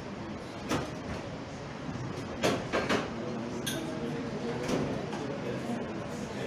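Bar glassware and metal shaker tins being handled on a counter: about six short knocks and clinks, the loudest cluster a little past the middle, over a steady room background.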